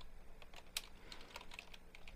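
Computer keyboard typing: a run of faint separate keystrokes as a word is typed into a file-rename box.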